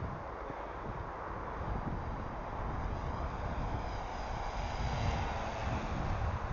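Art-Tech P-51 Mustang RC foam warbird flying overhead: a faint whine from its electric motor and propeller, growing a little louder near the end, over wind rumble on the microphone.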